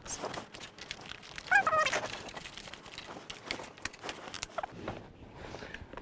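Small clicks, knocks and rustles of plastic as cables and accessories are packed into a clear plastic hinged project box and the box is handled. A brief vocal sound comes about one and a half seconds in.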